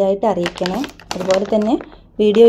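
A woman speaking, with light crackling and clicking from a plastic zip bag of cut cassava pieces being handled.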